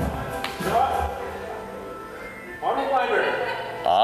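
Background music with a voice in it, playing through the rest break between exercise rounds.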